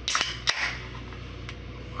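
Can of King Cobra malt liquor cracked open by its pull tab: a first crack with a short hiss, then a louder pop and fizz about half a second in as the tab breaks the seal.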